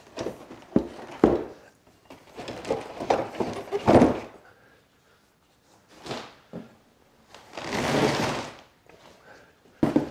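Knocks and clunks of metal table-saw stand parts and molded pulp packing being handled and lifted out of a cardboard box, with a longer scraping rustle near the end.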